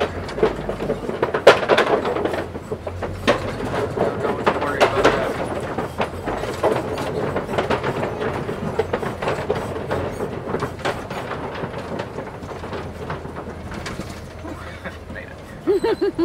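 Safari ride truck driving along a rough dirt track: a steady low engine hum with frequent knocks and rattles as the vehicle bounces, and indistinct voices over it.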